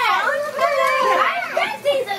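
Overlapping high-pitched voices of young children and women chattering over one another.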